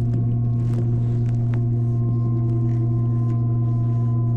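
Steady electric hum inside an S-Train carriage: a low drone with several constant higher tones above it and faint scattered ticks and rattles.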